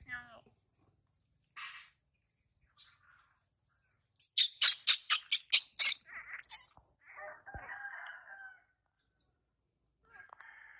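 Fowl calling: a rapid run of about eight loud, sharp calls starting about four seconds in, then a rooster crowing near the end, over a thin steady high insect buzz.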